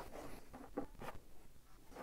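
Faint handling sounds of a USB cable being unplugged and pulled away across a desk: several soft scrapes and rustles, with a sharper scrape at the very end.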